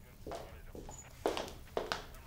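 Footsteps on a hard floor: a few separate steps, the clearest a little past the middle.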